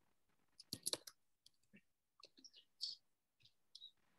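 Faint, irregular clicking of computer keyboard keys being typed, about a dozen short clicks in uneven bunches.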